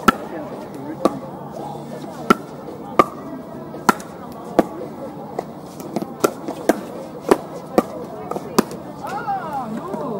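Pickleball paddles striking a plastic ball: a run of sharp pops about one a second, coming several in quick succession around six to seven seconds in. Voices talk in the background, louder near the end.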